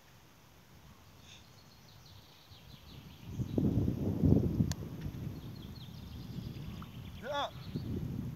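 Birds chirping over a quiet outdoor background. About three and a half seconds in, a gust of wind rumbles on the microphone for a second or two. Just after halfway, a single sharp knock: a football being kicked.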